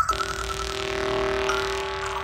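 Psytrance electronic music without a beat: a sustained synthesizer drone with a rushing noise sweep that starts suddenly, sounding somewhat like a car.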